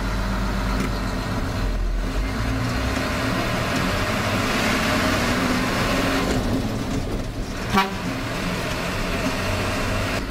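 Hino four-wheel-drive coach's diesel engine running as the coach pulls away and drives along a street, heard from inside the cab, with road noise swelling in the middle.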